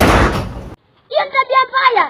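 A sudden thump with a burst of noise at the very start, fading out within a second, then a person speaking from about a second in.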